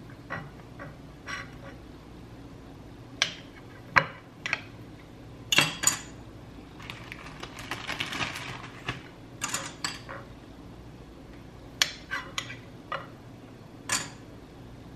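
Table knife slicing banana bread on a ceramic plate: the blade taps and clinks against the plate several times, with a longer scraping stretch about halfway through as it saws through the loaf.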